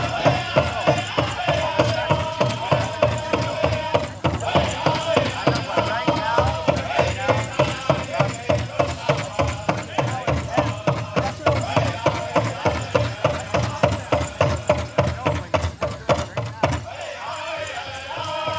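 Pow wow drum group singing over a large powwow drum struck in a fast, steady beat of about three to four strokes a second. The drumming stops near the end while the voices carry on.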